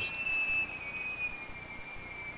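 A steady high-pitched whine, one thin tone that drifts very slightly lower in pitch, over faint background hiss.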